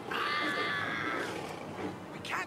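Cartoon mountain lion's yowl as it mauls a character: one high, drawn-out cry lasting about a second, then fading.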